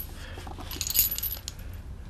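A photograph's stiff paper rustling and crackling as it is handled and pulled from a hand, in one short crisp burst about a second in, over a faint steady low hum.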